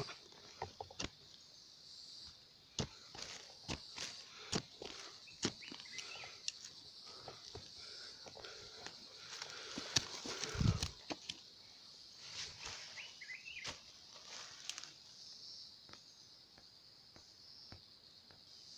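Digging by hand in loose soil around a wild yam's roots: scattered small clicks, crunches and scrapes of earth and roots being pulled loose, with one dull bump about ten and a half seconds in. A steady high hiss sits underneath.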